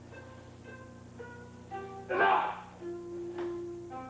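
Instrumental background music of pitched plucked-string notes, with a loud, noisy burst about two seconds in and a sharp click a little after three seconds.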